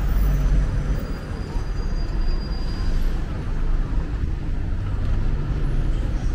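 Road traffic on a busy town street: a steady low rumble of passing vehicles.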